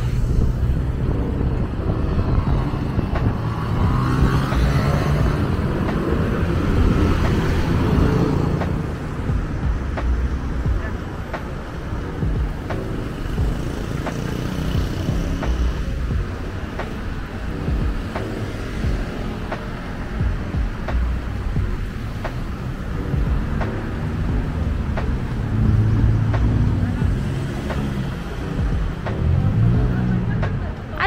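City road traffic: car engines passing a street junction with a steady low rumble, swelling as vehicles go by about four to eight seconds in and again near the end.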